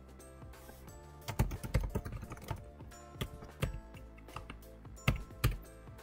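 Typing on a computer keyboard: a quick run of keystrokes starting about a second and a half in, then a few scattered keystrokes.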